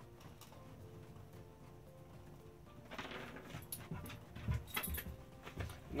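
A dog moving about and making small noises close by, starting about three seconds in, with a few soft low thumps; before that only faint room hum.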